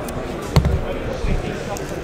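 Cardboard trading-card hobby boxes knocking together and thudding onto a table as one is pulled off a stack and set down: a dull thump about half a second in and a lighter one later.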